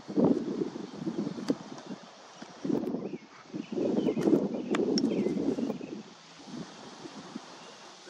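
Wind buffeting the microphone in gusts, heaviest in the first second and again from about three and a half to six seconds in, with a few sharp clicks in between.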